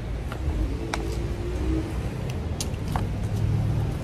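Street traffic: the low rumble of a car engine running close by, growing a little stronger near the end, with a few light clicks.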